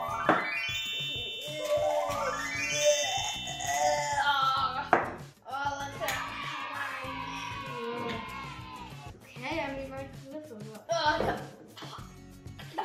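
Background music with a rising, sweeping sound effect at the very start, and children's voices over it.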